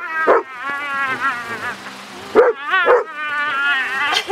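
A dog giving sharp yelps, each run on into a long high wavering whine, in two bouts: one at the start and one about two and a half seconds in.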